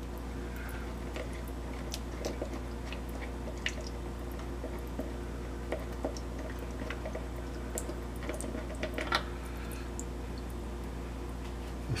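Plastic hummingbird feeder being handled and taken apart: scattered small clicks and taps of plastic, with faint liquid sounds from sugar water still inside, a little busier about nine seconds in.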